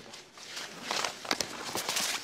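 Rustling and handling noise: a run of light knocks and rustles about halfway in, as someone moves and handles papers close to a microphone.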